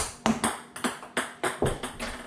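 Ping pong ball striking and bouncing repeatedly on a hardwood floor after a missed shot: a sharp first click followed by a quick run of lighter clicks.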